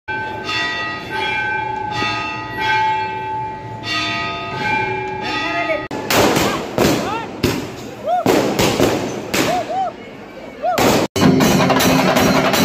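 Bells ringing, struck about once a second with long ringing tones, for roughly the first six seconds. Then fireworks go off: a run of bangs and crackle with whistles rising and falling. After a sudden cut near the end, chenda drums start playing fast.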